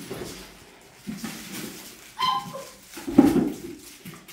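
Five-to-six-week-old puppies playing, with a few short whimpering yips: a short high one a little after two seconds in and a louder one just after three seconds.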